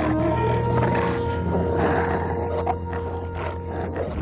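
Ominous film score: a low droning bed with long held tones, under a rough, roar-like sound effect.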